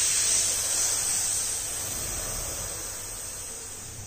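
A long hissing breath drawn in through lips pursed into a crow's-beak shape (kaki mudra breathing). It is loudest at the start and slowly fades away over several seconds.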